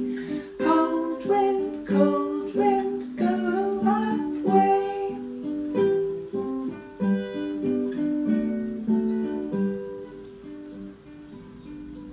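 Classical guitar with a capo, picked in a gentle song accompaniment and then playing on alone between verses. It gets quieter near the end.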